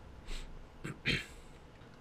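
A quiet room with a couple of soft breaths and a faint click about a second in.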